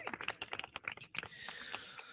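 Typing on a computer keyboard: a run of light, irregular key clicks.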